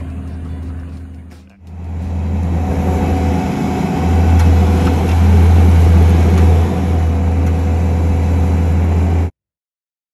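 Kubota SVL90 compact track loader's diesel engine running under load close by: a steady low drone that grows louder a few seconds in and cuts off suddenly near the end.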